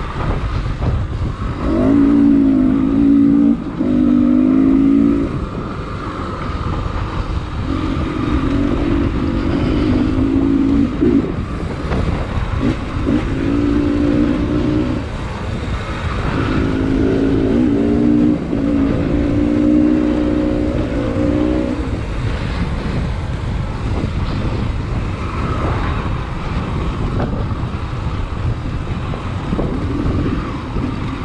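Dirt bike engine on an enduro trail ride, picking up revs and backing off in four bursts of a few seconds each, over steady wind rumble on a helmet-mounted microphone.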